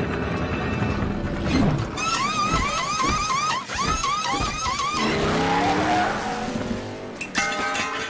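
Film soundtrack of a race car pulling into a pit: tyres squealing in a run of repeated wavering squeals over music and engine sound, followed by a lower rising sound.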